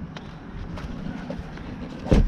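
Low steady rumble with a few light knocks and rustles, made as a portable power supply and gear are handled in the back seat of an SUV.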